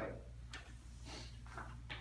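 Wet cotton string mop swishing across glazed tile in a few soft strokes, over a low steady hum.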